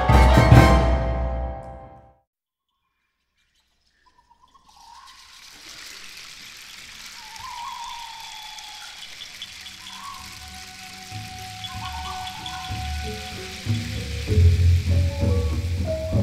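Gamelan ensemble and symphony orchestra in live performance: a loud, ringing chord dies away by about two seconds in. After a pause of about two seconds, a quiet hissing, rustling texture with soft sliding tones builds, and low drum strokes and gamelan metallophone notes come in near the end.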